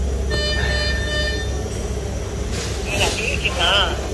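A steady high electronic tone sounds for about a second and a half shortly after the start, over a constant low hum.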